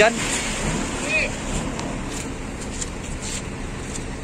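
Steady rain falling, a continuous hiss with scattered faint taps of drops.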